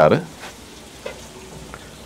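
Steady low hiss with a couple of faint clinks of a steel spoon against a small steel bowl as pickle is served onto a plate.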